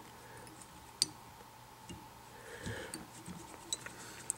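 Small handling sounds of fly tying at the vise: one sharp click about a second in, then faint rustling and a few light ticks, over a faint steady hum.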